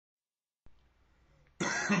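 A man coughing: a loud, harsh burst about three quarters of the way in, after a faint click and quiet room noise.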